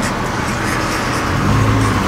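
Car engines running hard with tyre and road noise, heard from inside a moving car during a side-by-side street race; a stronger, deeper engine note comes in about one and a half seconds in.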